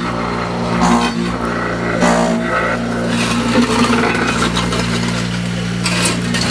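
Electric vibrator motor of a hollow-block making machine running with a steady hum, shaking the mould to compact a limestone-and-cement mix.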